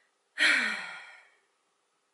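A woman's heavy sigh: one breathy, voiced exhale that starts abruptly, drops a little in pitch and fades out over about a second.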